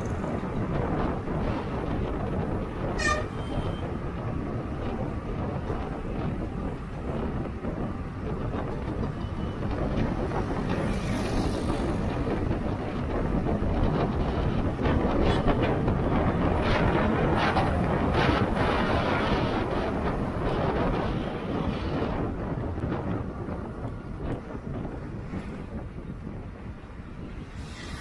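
Road travel noise from moving along in traffic: wind rushing on the microphone over the hum of engines and tyres. There is a short horn toot about three seconds in.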